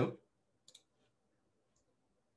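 Two quick clicks about two-thirds of a second in, as a presentation slide is advanced on a computer. Otherwise near silence.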